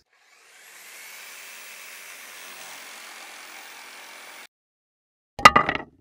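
A whooshing swell of noise that fades in and holds for about four seconds, then cuts off abruptly. After a short silence a loud, sharp hit with a brief ringing tone follows near the end. These are the sound effects of an animated logo intro.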